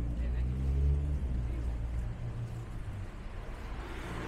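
Low engine rumble of a passing road vehicle on a town street, loudest in the first two seconds and then fading into general traffic noise.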